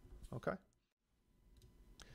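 Near silence after a brief spoken "okay", with only a faint click or two.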